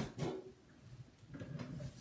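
A single sharp knock right at the start, then mostly quiet room tone.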